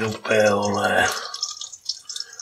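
A man's voice for about the first second, then an omelette frying in oil in a pan, a quieter sizzling crackle.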